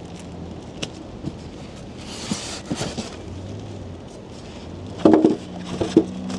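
Light knocks and rustling as winch parts and their plastic packaging are handled out of a cardboard box. A short voice-like sound comes about five seconds in.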